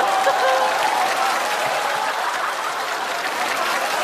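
Studio audience applauding steadily, easing off slightly, with a few faint voices in the crowd.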